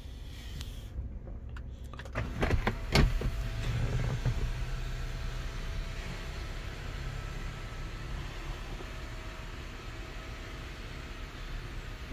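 Jeep Wrangler Sky One-Touch power top opening: a few knocks about two to three seconds in, then the top's electric motor runs steadily as the fabric roof slides back.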